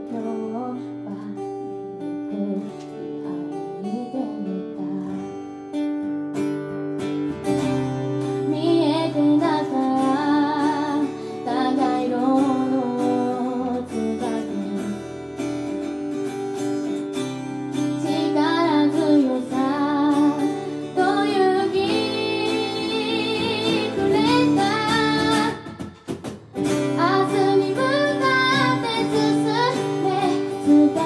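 A woman singing with vibrato over two acoustic guitars playing chords together, with a short break in the music about four seconds before the end.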